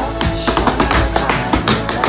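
Tap shoes' metal plates striking a hardwood floor in a quick run of taps, danced over a loud song with a steady beat.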